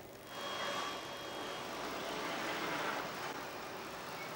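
Faint, steady street traffic noise with no distinct events.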